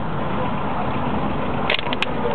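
Mercedes-Benz taxi driving slowly, its engine and road noise heard as a steady rumble inside the cabin, with a couple of brief sharp clicks near the end.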